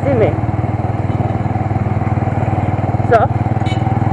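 Motorcycle engine running steadily at an even speed, with no revving.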